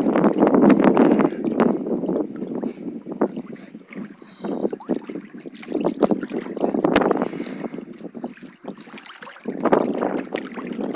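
Swimming-pool water splashing and sloshing right against a phone held at the surface, in uneven surges, loudest in the first two seconds and again midway. One sharp click about seven seconds in.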